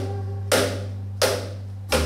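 Cajon struck by hand, four sharp slaps with short decays spread across the two seconds, over a steady held low note from the accompanying music.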